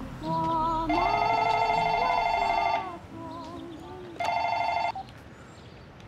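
Telephone ringing: one ring of about two seconds starting about a second in, then a shorter ring after a pause, under soft music.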